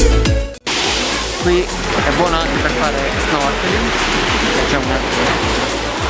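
Electronic music with a steady beat cuts off suddenly about half a second in. It is followed by sea surf washing on a rocky shore, with faint voices.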